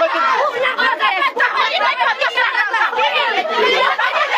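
A group of women's voices talking and calling out at once, loud and overlapping so that no single speaker stands out.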